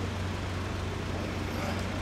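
Steady urban road traffic: a constant low engine hum under an even wash of street noise.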